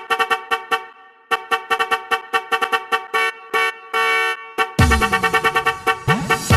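A rapid run of short, staccato horn-like notes, the same chord sounded over and over in quick bursts with a brief pause about a second in. Near the end, music with a heavy bass line comes in.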